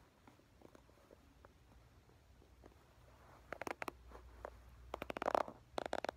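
Wooden popsicle sticks being handled and pressed together: a few faint ticks at first, then a run of quick, sharp clicks and clacks in the second half.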